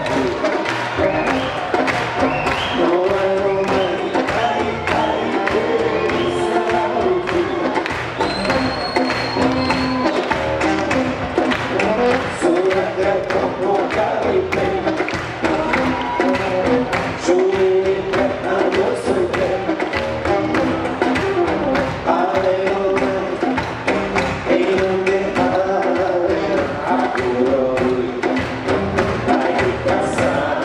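Live Balkan brass band music: brass instruments playing a melody over a steady drum beat.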